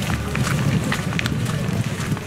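Footsteps of someone walking, with a fluttering low rumble on the microphone and scattered light clicks.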